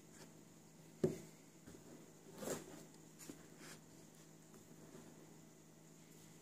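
Quiet room tone with a low steady hum, broken by a few small handling knocks and clicks: a sharp knock about a second in, the loudest, a softer scuffing knock about two and a half seconds in, and a couple of light ticks after it.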